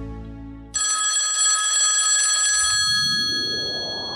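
Antique telephone bell ringing, starting suddenly about a second in and ringing for about two seconds before fading, while a swelling noise rises underneath. The low tail of a musical logo sting dies away at the start.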